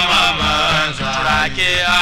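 Traditional Hausa praise music: chanted singing in long, bending phrases over a low sustained accompaniment.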